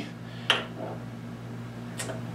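A steel reloading die set down on a Hornady Lock-N-Load press bushing, making a single light metallic click about half a second in, over a steady low hum.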